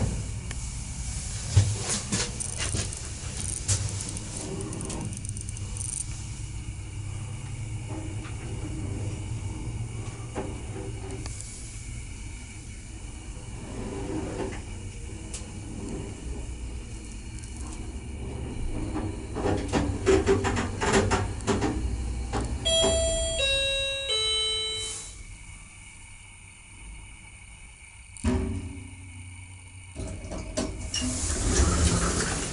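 Ecomaks electric passenger elevator car travelling up the shaft: a steady low hum and rumble with scattered clicks and rattles. Near the end the car stops, a three-note chime steps down in pitch to announce the arrival, and a short clunk follows as the doors start to open.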